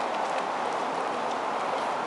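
Footsteps on a paved trail, light irregular taps, over a steady rushing hiss.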